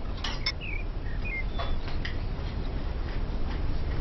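A few light clicks and clinks of a table knife against a plate as sandwiches are cut, clustered in the first two seconds, over a steady low background rumble.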